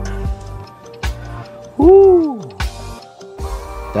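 Background music plays, with a few short clicks. About two seconds in comes a loud, hoot-like vocal 'ooh' that rises and then falls in pitch.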